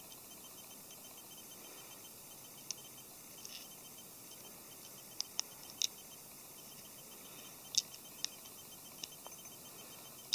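Small plastic model-kit parts handled by hand: scattered soft clicks and taps, a few close together and the sharpest a little before the end, over a faint steady hiss.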